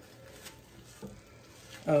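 Faint sounds of a serving spoon scooping hot baked spinach artichoke dip with a crispy breadcrumb crust out of its baking dish, with two soft knocks about half a second and a second in. A woman's voice says "Oh" at the very end.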